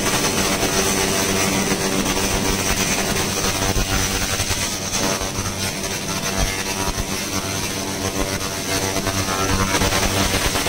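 Handheld 1000 W continuous fiber laser cleaner ablating rust off a steel sheet: a steady, dense crackling hiss with a low hum underneath.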